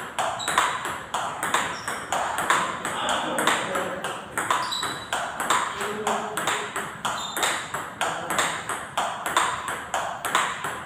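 Table tennis multiball drill: ping-pong balls clicking off rubber paddles and bouncing on the table in a quick, even stream of several sharp ticks a second.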